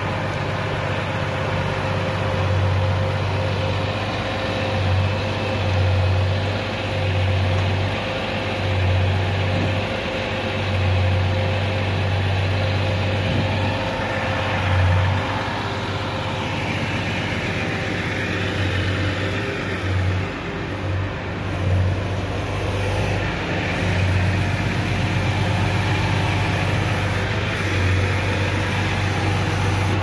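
A fire engine's diesel engine idling close by, a steady low hum that swells and eases every second or two, over the even hiss of falling rain.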